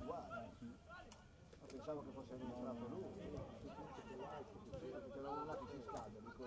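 Faint, indistinct voices of footballers and onlookers calling out and talking over one another.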